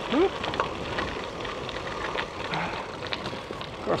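Gravel bike tyres rolling over a loose gravel path: a steady crunching hiss with scattered small clicks of stones.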